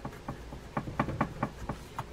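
Green kitchen scrub pad rubbed in quick short strokes against the metal side case of an Abu Ambassadeur baitcasting reel: a rapid run of scratchy rasps, about five a second. It is scouring off dried oil and grease crud with rod and reel cleaner.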